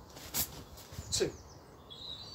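A small bird chirping near the end, a short high call, with a single sharp snap about half a second in.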